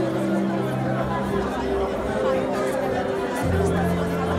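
A congregation praying aloud all at once, many overlapping voices, over sustained held chords of background worship music that change about three and a half seconds in.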